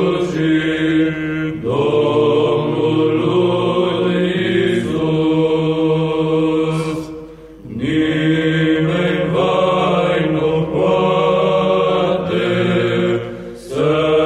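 A male monastic choir singing a Romanian Orthodox priceasnă hymn in long, held vocal phrases, with a short pause for breath about halfway through.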